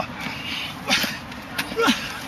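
Two men sparring hand to hand at close range: a brief noisy burst of contact and breath about a second in, then a short shout that falls in pitch near the end.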